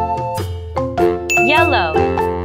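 Upbeat children's background music played on bell-like chiming notes, struck every few tenths of a second. A brief warbling, sliding tone is laid over it in the second half.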